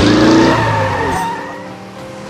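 Car sound effect: a running engine with tyres skidding, loud at first and dying away after about a second.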